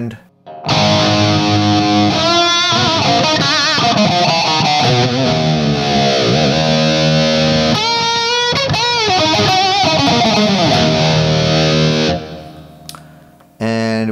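Electric guitar, a Stratocaster, played through the NUX Mighty Air's DIE VH4 high-gain amp model: heavily distorted sustained chords and lead lines with bent, wavering notes. The playing stops about twelve seconds in and rings off.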